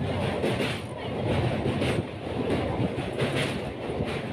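EMU local train running over a steel girder river bridge, heard from inside the coach: a steady running noise of wheels on rails with faint, irregular clicks.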